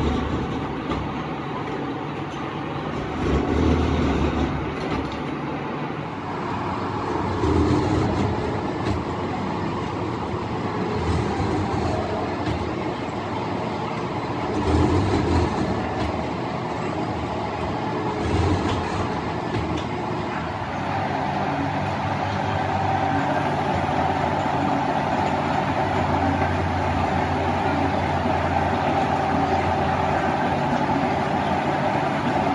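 Vertical slotting machine cutting the tooth gaps of a large steel spur gear: heavy strokes surge about every four seconds over a steady machine hum. About two-thirds of the way in the sound changes to a steadier running with a held mid-pitched tone.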